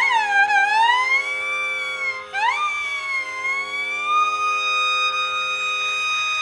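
Carnatic violin playing a slow phrase that slides smoothly between notes. About two seconds in it breaks briefly and slides up into a long held note, over a steady tanpura drone.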